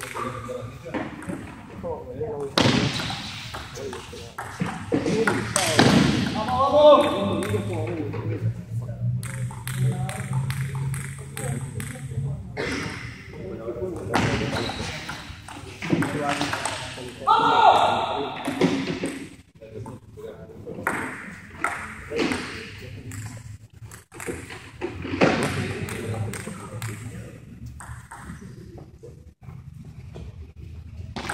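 Table tennis rallies: the ball clicking back and forth off paddles and table in quick runs of hits, with short pauses between points, in a large echoing hall.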